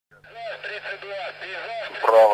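A voice speaking in an old radio-broadcast sound, thin and band-limited, over a steady low hum.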